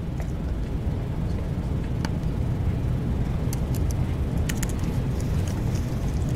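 A steady low rumble of room noise, with scattered light laptop keyboard clicks as a command is typed into a terminal.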